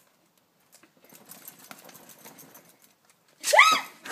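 Faint rustling of a bag being shaken to tip a mouse out, then near the end a short, loud, high-pitched squeal that rises and falls: a person shrieking.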